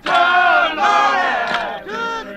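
Unaccompanied group of male prisoners singing a work song together in long, held phrases, with a short break about one and a half seconds in.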